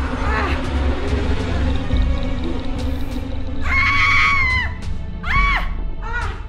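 Background film music throughout. About four seconds in, a woman lets out a loud wail lasting about a second, then a second, shorter cry.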